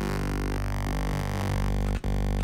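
Xfer Serum software synthesizer holding one low bass note played from a hand-drawn wavetable. The buzzy tone's timbre keeps shifting as the waveform is redrawn, and with the wavy shapes it takes on a somewhat vocal quality. It cuts out briefly near the end.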